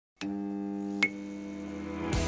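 A steady electronic tone with several pitches starts with a click, and a second, louder click comes about a second in.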